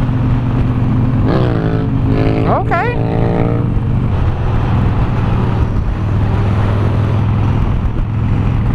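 Harley-Davidson Nightster's V-twin running steadily at highway speed, with wind rushing over the rider's microphone. From about one and a half to four seconds in, a pitched sound rises and falls above the engine.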